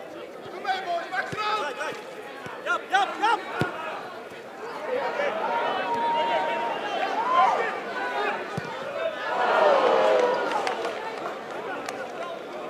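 Live sound from an amateur football pitch: players and spectators calling out, with a few sharp knocks of the ball being kicked. About ten seconds in, many voices swell up together.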